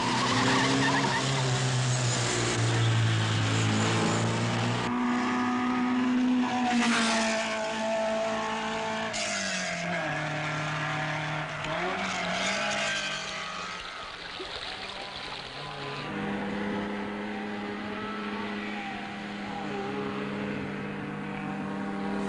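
Rally car engines running at speed, their pitch holding steady for a few seconds at a time and shifting several times.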